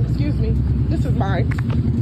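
A person's voice speaking briefly, over a loud, steady low rumble from the outdoor phone recording.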